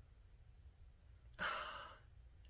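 A single audible breath, lasting about half a second near the end, taken while smelling a perfume strip held under the nose. Before it there is near-silent room tone.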